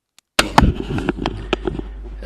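Several sharp computer-mouse clicks over a steady low electrical hum. The sound cuts in suddenly out of dead silence a little under half a second in.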